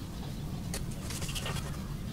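A metal pick makes small clicks and scrapes as it pries at a smartphone's plastic frame and internal parts, over a steady low rumble.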